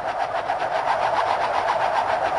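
Film sound effect of spinning shuriken (ninja stars) whirring through the air: a fast, even fluttering pulse.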